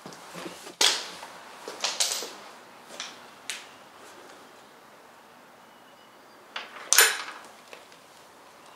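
Footsteps and knocks on wood as someone climbs steps onto a timber floor: a few sharp knocks in the first few seconds, then two louder knocks about seven seconds in, the loudest, as a wooden stair railing is handled.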